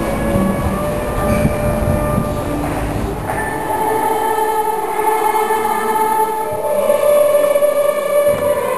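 Street buskers playing a wind instrument and an acoustic guitar over the noise of passers-by, cut off abruptly about three seconds in by a choir singing long, held chords that echo in a large church.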